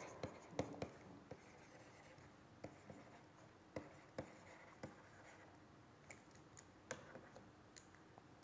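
Faint, irregular ticks and light scratches of a stylus writing on a tablet screen, about a dozen taps scattered through the quiet.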